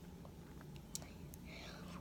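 A quiet pause between sung lines: faint room tone with a soft breath and a small click about a second in.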